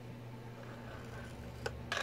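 Stylus scoring tool drawn along a paper star on a plastic scoring board, faint and scratchy, with two light clicks near the end over a steady low hum.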